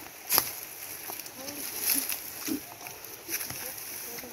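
Footsteps crunching and scuffing on dry leaf litter and loose stones as several people walk off quickly uphill, with a few sharp crunches standing out, one about a third of a second in. Faint voices are heard under the steps.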